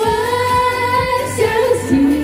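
Women singing a Chinese song into microphones over an amplified backing track, holding one long note before the melody moves on near the end.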